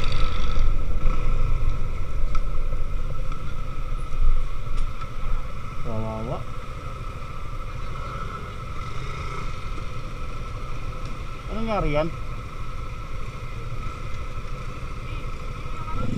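Motorcycle riding along a road in traffic: a steady low engine and wind rumble, louder for the first few seconds and then easing off. Short voices break in about six and twelve seconds in.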